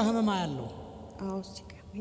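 Speech only: a voice through a microphone, with a drawn-out syllable falling in pitch at the start, then a short word a little over a second in.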